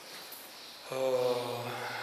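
A man's voice, after a short pause, drawing out one long vowel at a steady pitch, chant-like, starting about a second in.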